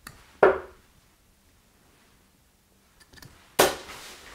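Two 23 g Harrows Damon Heta steel-tip darts striking a bristle dartboard, each landing with a sharp thud, about three seconds apart.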